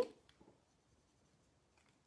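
Near silence: a spoken word trails off at the very start, then the sound drops away to almost nothing.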